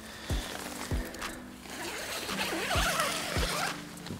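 Tent door zipper being unzipped in raspy pulls, over background music with a soft steady beat.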